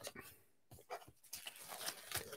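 Faint rustling and light knocks of papers and folders being searched through by hand, a scatter of short soft sounds.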